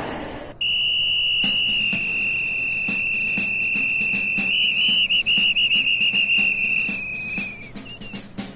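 A sports whistle blown in one long, loud blast of about seven seconds: a steady high tone that turns into a rapid warble in its second half, then trails off near the end.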